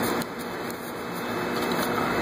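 Steady low background hum, like a fan or air conditioner running in the room, with faint rustling of a sheet of paper being creased and folded by hand.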